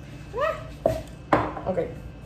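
Drink containers set down on a kitchen counter after pouring: a light click, then one sharp, louder knock about a second and a half in.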